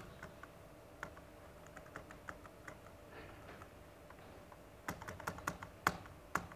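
Keys on a Sony VAIO laptop being pressed: scattered faint clicks, then a quicker run of louder clicks near the end.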